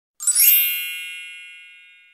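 A single bright, high chime sound effect struck once about a quarter-second in, ringing on with many high overtones and fading slowly away.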